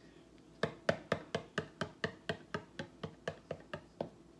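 Fingers tapping quickly on the bottom of an upturned plastic cup of acrylic paint held on a canvas, a run of about fifteen light knocks at roughly five a second, done to coax the paint out of the flipped cup.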